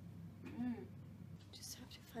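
A woman's short, soft voiced sound about half a second in, then hissy whispered sounds near the end, over a steady low hum.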